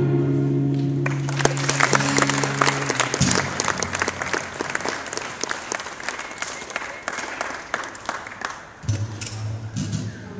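An acoustic guitar's last chord rings out and dies away after about three seconds. An audience starts clapping about a second in, and the applause slowly thins. A low pitched tone sounds near the end.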